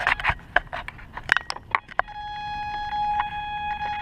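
Sharp clicks and knocks from the radio-controlled trainer plane being handled close to its onboard camera, then a steady whine that starts about halfway through and holds.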